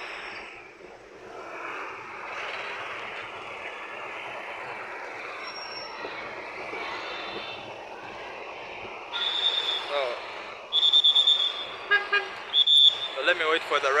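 Street traffic noise, then from about nine seconds in a run of short, high-pitched vehicle horn toots, four or five in quick succession.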